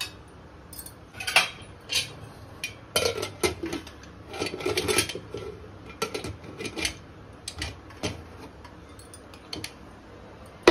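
Stainless steel pressure cooker lid being put on and closed: a string of sharp metallic clinks and knocks, steel on steel, with some scraping in the middle.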